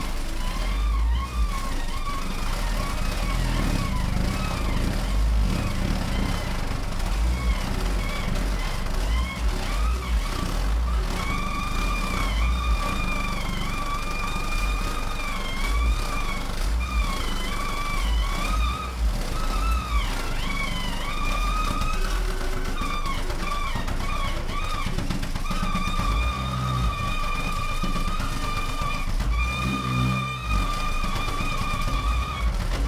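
Experimental ensemble improvising: a wavering, sliding high tone with overtones sounds over low rumbling pulses, the tone holding steadier near the end.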